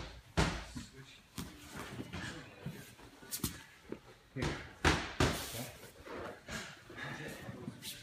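Two grapplers in cotton gis moving on foam mats: fabric rustling and scuffing, broken by several sharp thuds of bodies and limbs hitting the mat, the loudest cluster a little past halfway.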